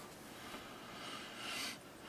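Quiet room tone with a faint breath through the nose that swells softly about one and a half seconds in.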